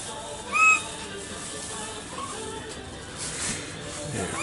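Pied butcherbird giving one short, clear whistled note about half a second in, with a few fainter notes about two seconds in.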